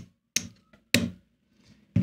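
Casino chips clicking together as they are picked up and stacked by hand: two sharp clicks about half a second apart.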